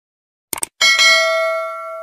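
A quick double mouse click, then a single bell ring that fades away over about a second and a half. These are the sound effects of a subscribe-button and notification-bell animation.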